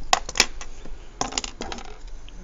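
A plastic pen set down on a hard desk: two sharp clicks in the first half second, then a quick run of lighter clatters about a second later.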